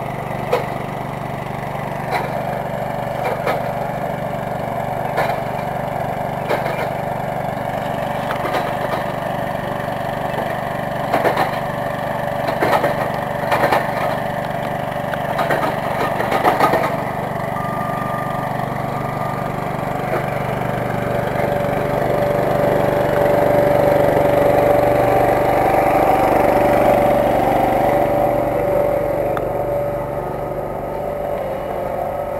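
An engine running steadily, with a clearer, louder hum in the last third. Sharp knocks and scrapes of shovel work are scattered through it, bunched together in the middle.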